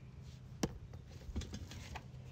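Locking pliers clicking against a seized steel wheel stud and hub: one sharp metal click about half a second in, then two fainter clicks a little later, over a low steady hum.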